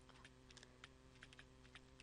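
Near silence with scattered faint ticks of a stylus tapping and scratching on a pen tablet as handwriting is written, over a faint steady electrical hum.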